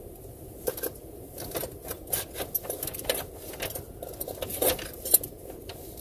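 Objects being handled and rummaged through: an irregular run of small clicks, clinks and rustles, with one sharper knock about five seconds in.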